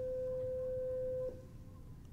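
A steady electronic beep at a single mid pitch, like a sine tone, that cuts off abruptly about a second and a quarter in.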